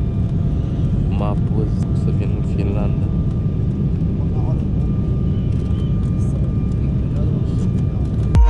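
Airliner cabin noise heard from a window seat: a steady low rumble of engines and airflow with a thin steady whine above it. A few faint voices come through in the first three seconds.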